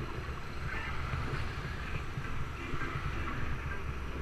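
Wind rumbling on the microphone of a camera mounted on a moving bicycle, with road and traffic noise underneath.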